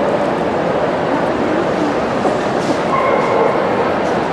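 Busy dog-show hall din: a steady murmur of many voices with dogs barking in the hall, and a brief high tone about three seconds in.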